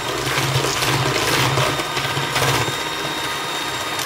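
Electric hand mixer running steadily, its beaters whirring through thick egg-and-creamed-shortening cake batter in a stainless steel bowl, with a constant low motor hum under the whir.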